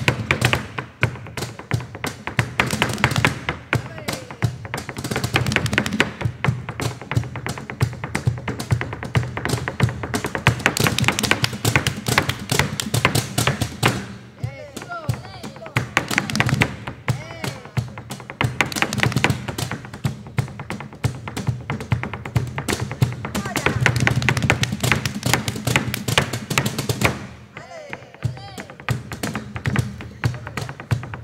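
Flamenco soleá performance: guitar with dense, sharp percussive strikes throughout. A voice sings in the quieter stretches about halfway through and near the end.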